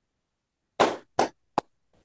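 Three short, sharp knock-like sounds in quick succession a little under a second in, the first the longest and loudest.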